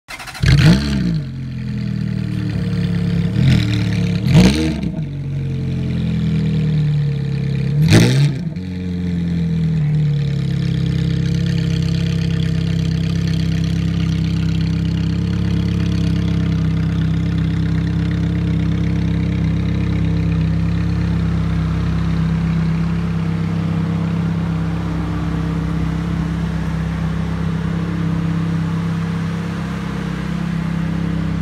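Ferrari F430 Spider's 4.3-litre V8 revved in four short throttle blips over the first nine seconds, each rising and falling back, then settling to a steady idle.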